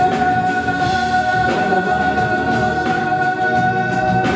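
Live band music with a male lead singer holding one long, steady high note over the band's backing, with drums keeping time underneath.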